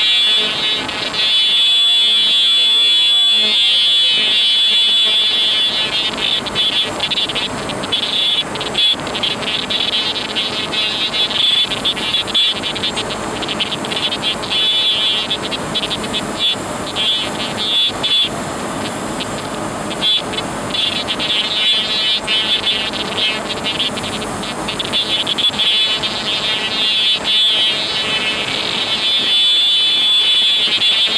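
Automatic ultrasonic glove making machine running: a loud, steady mechanical din with a high whine, broken by irregular knocks from its working stations.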